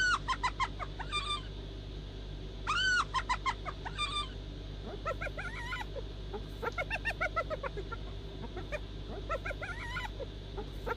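Spotted hyena calling: two loud rising-then-falling calls, near the start and about three seconds in, each trailed by quick short notes, then rapid runs of short high-pitched notes, the hyena's laughing giggle, from about five seconds on.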